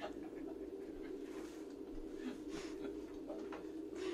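A steady low hum with scattered faint clicks and rustles.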